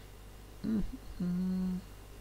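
A person's voice making a short wavering hum, then a steady, level 'mmm' held for about half a second.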